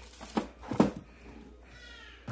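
A clear plastic storage bin of bagged bread is handled onto a pantry shelf: two short plastic knocks and rustles, the second the louder, then a faint squeak near the end.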